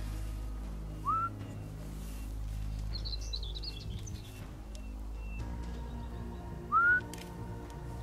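Two short rising whistles, one about a second in and one near the end, with a brief flurry of bird chirps between them. Faint background music runs underneath.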